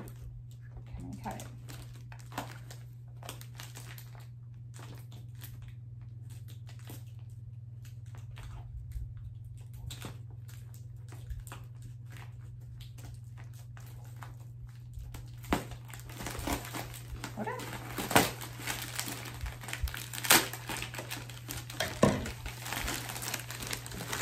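Clear plastic packaging around a vacuum-compressed plush teddy bear being handled and opened: faint scattered rustles at first, then dense crinkling with sharp crackles from about two-thirds of the way in. A steady low hum runs underneath.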